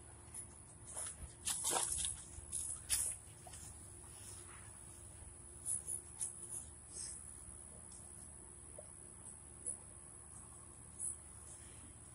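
Faint rustling and scattered light knocks of footsteps and a puppy moving through tall grass, busier in the first few seconds and sparse after.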